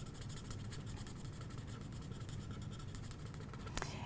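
Alcohol marker nib scratching softly on cardstock as colour is laid down in small strokes, with a faint steady hum underneath and a light click near the end.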